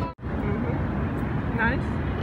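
Steady low rumbling background noise, with a brief snatch of a voice near the end. The sound drops out completely for a split second just after the start.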